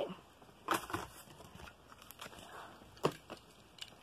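A few faint crinkles and light clicks of a plastic blister and card toy package being handled, with quiet between them.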